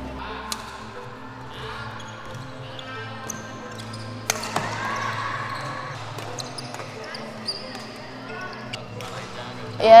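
Badminton practice in an indoor hall: a few sharp racket-on-shuttlecock hits and squeaks from players' shoes on the court, with voices in the background.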